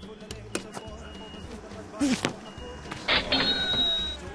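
A football shot at goal: a kick about two seconds in, then a louder sharp hit just after three seconds in, followed by a brief high ringing, over background music.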